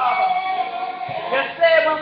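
A voice singing slowly, with long held notes, over a faint steady low hum.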